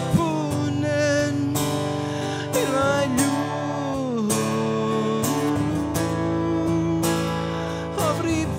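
Steel-string acoustic guitar strumming chords under a held melody line that glides slowly between notes: an instrumental passage of a song.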